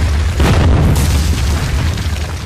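Cinematic boom-and-crash sound effect of a wall bursting apart, over a deep rumble. A heavy hit comes about half a second in and a second sharp crack about a second in.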